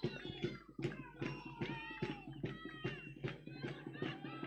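Fans' bombo (bass drum) beating steadily at about three to four beats a second, faint and carrying, with supporters singing or chanting over it.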